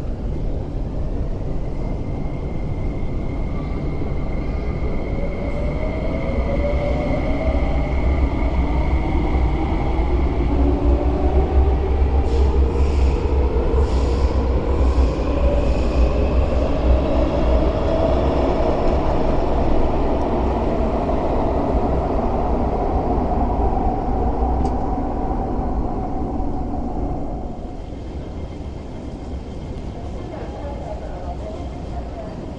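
MTR West Rail Line electric train pulling out of the platform: the traction motors' whine climbs in pitch as it gathers speed over a steady heavy rumble, with a steady high tone in the first few seconds. The sound drops away near the end as the train clears the station.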